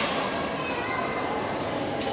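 Indistinct background chatter of people talking, with no clear words.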